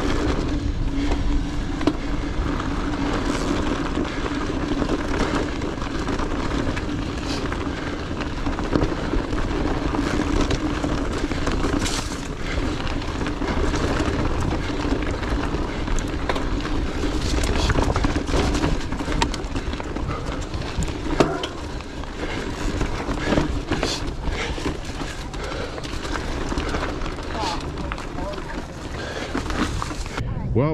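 Mountain bike descending a dirt road and rocky singletrack: wind rushing over the bike-mounted camera's microphone, tyres crunching on gravel and the bike rattling over rocks. A steady hum runs through roughly the first half, with short knocks throughout.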